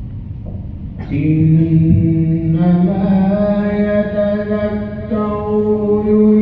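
Quran recitation in slow, measured tarteel style by a single reciter. The voice comes in about a second in with long, held notes that step slowly between pitches, over a low background rumble.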